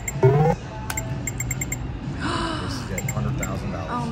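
Video poker machine sounds: a short rising electronic tone about a quarter second in, then a quick run of four short ticks as cards are dealt. A breathy gasp comes about two seconds in, over steady casino background music and hum.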